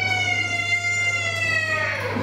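A child's crying wail: one long, high-pitched cry whose pitch sinks slowly before it fades near the end.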